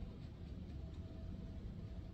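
Steady low room rumble with a faint, broken hum tone over it.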